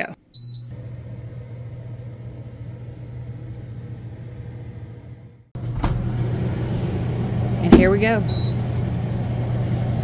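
Food dehydrator beeping once as it is started, then its fan running with a steady low hum. The hum gets louder about five and a half seconds in, and there is a second short beep near the end.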